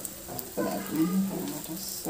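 A person's voice talking, picked up less clearly than the narration, from about half a second in.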